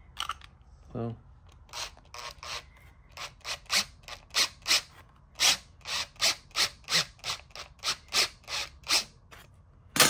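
Schwartmanns Beady cordless beading machine rolling a bead into a small sheet-metal disc: a run of short rasping strokes, about three a second, starting about two seconds in and stopping near the end.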